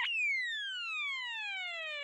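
A cartoon-style whistle sound effect: a quick upward swoop, then one long, smoothly falling whistle.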